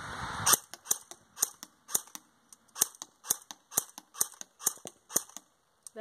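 AK-47-style airsoft electric gun (AEG) firing single shots on semi-auto, a sharp snap about twice a second, starting about half a second in.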